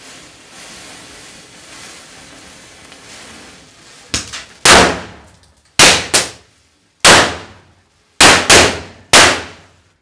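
A string of small Diwali firecrackers (bijli crackers) goes off after being lit by the burning matchstick chain: about eight sharp bangs from about four seconds in, some in quick pairs, each ringing out briefly. Before the bangs there is a faint steady hiss of the matchsticks burning.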